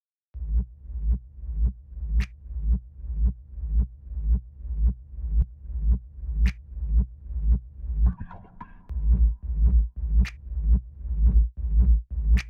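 Instrumental intro of an experimental industrial hip-hop beat: a deep, throbbing bass pulse about twice a second, with a sharp hit every four seconds or so. Near the middle the pulse briefly drops out for a noisy texture with a held tone.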